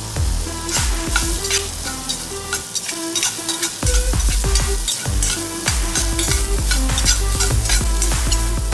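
Diced raw mango sizzling in hot oil in a pan as it is stirred and tossed with a spatula, under electronic background music with a steady beat.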